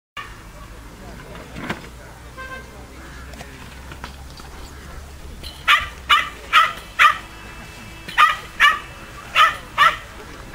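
Young Mudi puppy barking while working sheep: a run of about eight sharp, high-pitched barks beginning a little past halfway, about two a second, with a short break in the middle.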